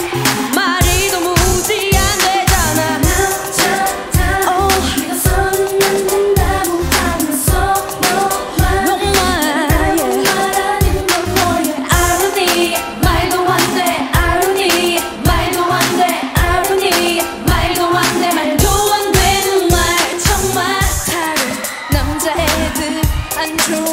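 K-pop girl group singing an upbeat pop song into microphones over a steady, driving dance beat.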